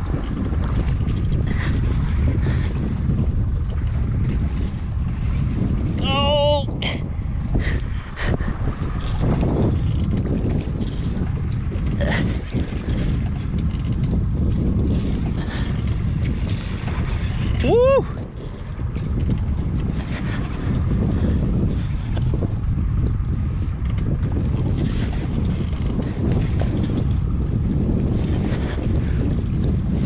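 Steady wind rumbling on the microphone over water noise around a small boat at sea. Two brief wavering vocal sounds cut through it, about six seconds in and again near eighteen seconds.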